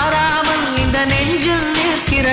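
Tamil film song: a singer holds long, wavering notes over a steady drum beat and instrumental backing.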